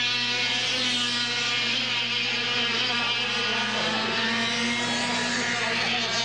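Air-cooled two-stroke kart engines racing past, a continuous high-revving buzz from more than one kart whose pitch wavers slightly as they pass.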